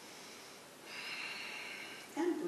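A person breathing out audibly, a steady airy hiss lasting about a second that starts halfway through.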